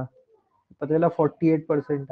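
Speech only: a man lecturing in Hindi, his voice starting about a second in after a short pause.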